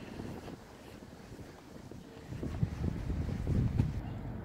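Wind rumbling on the microphone outdoors, light at first and growing louder in the second half, with a faint click near the end.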